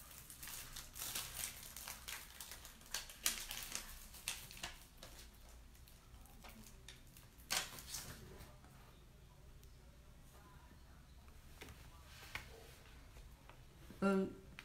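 Crafting materials being handled on a worktable: scattered light clicks and crinkling of packaging and paper, busiest in the first half, with one sharper click about halfway, then only faint room noise.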